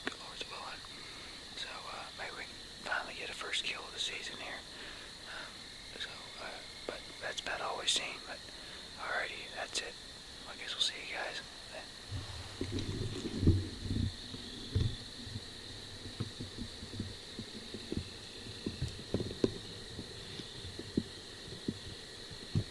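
Whispered speech for roughly the first half, over a steady high-pitched tone; from about halfway on, low thumps and rumbling of handling noise near the microphone.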